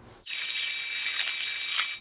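A loud, dense chorus of insects, likely cicadas, with a high buzzing hiss and several steady whining tones. It starts abruptly about a quarter second in and cuts off just before the end.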